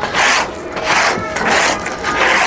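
A hand tool scraping caked, dried pigeon droppings off a pigeon-loft tray, in quick repeated rasping strokes of about two to three a second.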